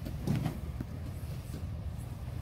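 Steady low room rumble, with a soft thump and rustle about a third of a second in: bodies and hands moving on a padded mat as an aikido pin is released.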